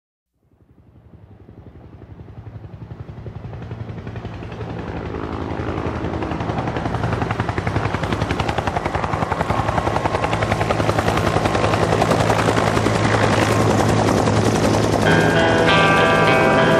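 Helicopter rotor chopping, fading in from silence and growing steadily louder as if approaching. Rock music with guitar comes in near the end.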